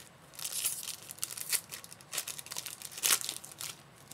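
Clear plastic trading-card packaging crinkling and rustling in handled bursts as cards are worked out and shuffled, loudest about three seconds in.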